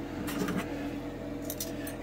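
Light clicks as painted test spoons are set down on a clear plastic dehydrator tray, twice (once shortly after the start and again near the end), over a steady low hum.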